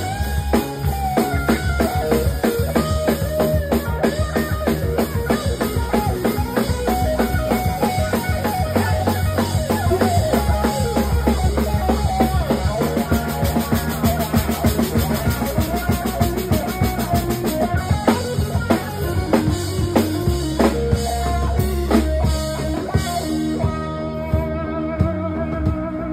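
Live rock band playing, with an electric guitar carrying a melodic lead over a steady drum-kit beat.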